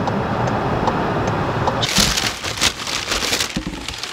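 Steady road and wind noise from inside a moving car for about two seconds, then a cut to close rustling and crackling from things handled right at the microphone.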